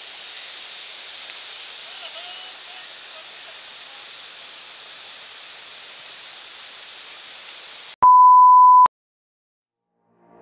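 Floodwater rushing across a road, a steady noise of flowing water. About eight seconds in it cuts off abruptly and a loud, steady electronic beep sounds for about a second, followed by silence.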